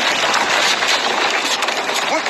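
Battle-scene soundtrack from a war film: a loud, dense, steady rush of noise with no clear words.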